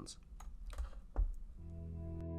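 A few sharp computer-keyboard clicks with a low thump among them, then soft ambient synthesizer music with held chords fading in about three-quarters of the way through.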